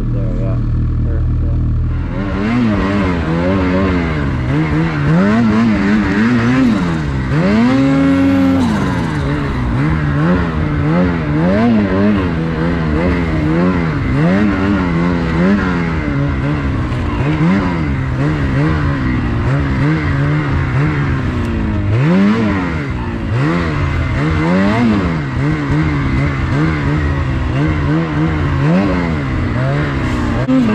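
Ski-Doo Gen 5 850 E-TEC Turbo R snowmobile engine, a turbocharged two-stroke, idling for about two seconds and then pulling away. It revs up and down over and over as the sled rides through deep powder, with one long held rev about eight seconds in.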